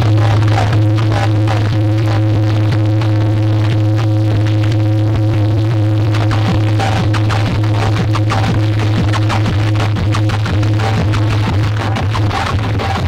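Loud electronic DJ music blasting from a stack of horn loudspeakers on a sound-box rig, carried by a steady deep bass tone with dense beats over it.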